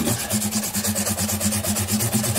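Fine 600-grit sandpaper rubbed rapidly back and forth across the frets of a Gibson L-00 acoustic guitar's fingerboard, an even run of short rasping strokes several times a second. The sanding rounds and smooths the fret tops and all but polishes them.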